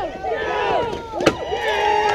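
Crowd of spectators yelling and cheering, many voices overlapping, as a runner comes home. One sharp smack cuts through about a second in.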